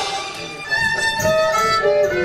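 Violin playing a few held notes in a live blues band as the drums and rest of the band drop back for a moment.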